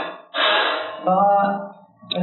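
A man's loud, breathy gasp lasting under a second, followed by a short spoken syllable.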